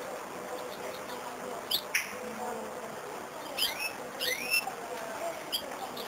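Caged serin–canary hybrid giving short, sharp, swooping chirps. There are two at about two seconds in, a quick run between three and a half and four and a half seconds, and one more near the end.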